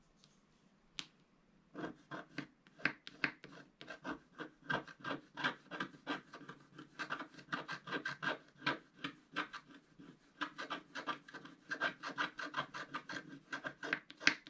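Wooden stylus scratching the coating off a scratch-art sheet in quick, short strokes, a few a second, starting about two seconds in.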